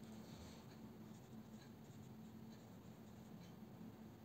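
Faint, soft strokes of a watercolour brush on paper, a light scratching now and then, over a low steady hum.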